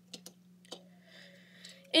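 A few light plastic clicks as a small plastic tensioning tool is handled and fitted into its plastic case, followed by a soft rustle, over a faint steady hum.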